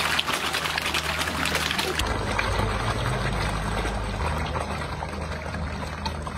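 Water splashing and churning as a packed crowd of feeding fish thrashes at the surface, with many small crackling splashes. About two seconds in, the sound changes abruptly to a duller splashing with a low steady hum underneath.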